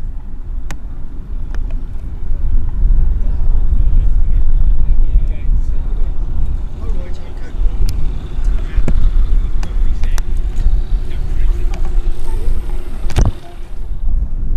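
Skyranger microlight taxiing, its engine running at a low idle under heavy wind rumble on the microphone, with a steady engine note coming through about halfway in. A sharp knock near the end.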